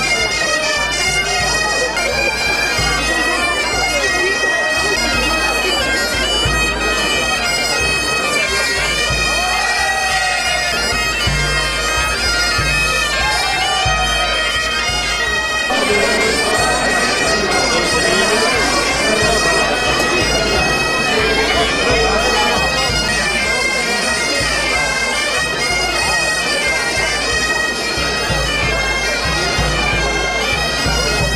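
Breton bagpipe music playing steadily: a held low drone under a bright, reedy melody, with the tune changing about halfway through. People talk underneath.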